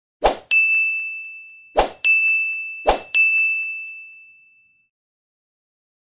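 Three identical edited-in sound effects in quick succession, each a short whoosh followed by a bright bell-like ding. The last ding rings out and fades over about a second and a half.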